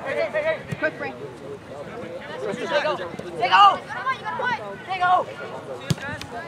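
Shouts and calls of several voices carrying across a soccer field during play, with no clear words, loudest about halfway through.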